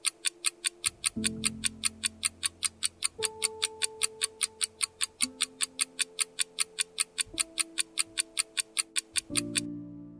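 A quiz countdown timer's clock-like ticking, about four ticks a second, over soft sustained background music chords that change about every two seconds. The ticking stops just before the end as the countdown reaches zero.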